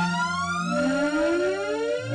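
Electronic synthesizer music: a steady low drone with slow rising glides in pitch, one about half a second in and another near the end, over a few held higher notes.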